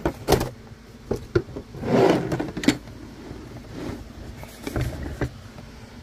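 Handling noise: a diagnostic tablet and its hard plastic carrying case being shifted, with a series of clicks and knocks and a short rustle about two seconds in.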